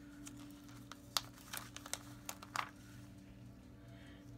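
Crinkling and small sharp clicks of a plastic-backed sheet of glittery stickers being handled as a sticker is peeled off, with a low steady hum underneath.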